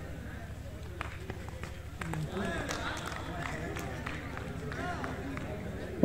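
Faint, distant voices of players and onlookers calling across an open cricket ground, with a few sharp clicks.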